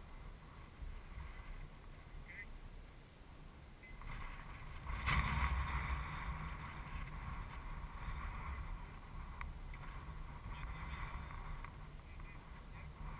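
Wind buffeting an outdoor camera microphone: a steady low rumble with a louder swell about five seconds in.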